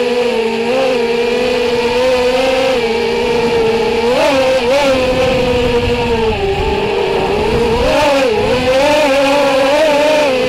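Neato180 FPV quadcopter's motors and propellers whining, heard from the camera on board, the pitch wavering up and down with the throttle. It dips lower about six to seven seconds in and climbs again around eight seconds.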